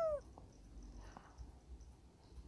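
Near silence: faint room tone with a low hum and a couple of faint ticks, after a man's voice trails off with a falling pitch at the very start.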